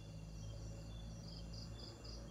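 Night insects chirping in a steady pulsed rhythm, several high chirps a second, with a louder run of chirps near the end, over a low rumble.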